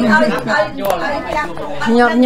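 A man talking in Khmer, in continuous speech.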